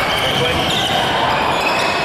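Busy badminton-hall background: overlapping voices chattering, with occasional short knocks from play on other courts, echoing in the large hall.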